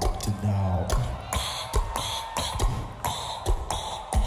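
Solo beatboxing: deep held bass notes under a fast rhythmic beat of kick and snare strokes, with hissing hi-hat sounds.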